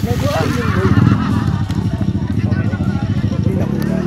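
Dirt bike engine running hard close by, its pitch rising near the end, with people's voices calling out over it.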